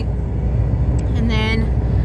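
Steady low rumble of a car idling, heard from inside the cabin. A short vocal sound from a woman comes a little over a second in.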